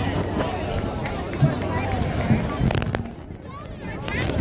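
Many voices talking and calling at once across an outdoor field, with a couple of sharp clicks a little before three seconds in.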